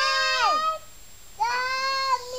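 Young children's high-pitched voices holding a long wordless note that drops away in pitch under a second in, then, after a short pause, another steady held high note.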